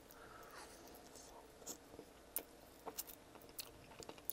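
Faint chewing of a sauced chicken wing, with a few soft clicks scattered through.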